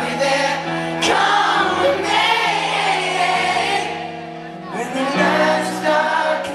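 Live pop ballad: a man sings a slow melody into a microphone over sustained held chords.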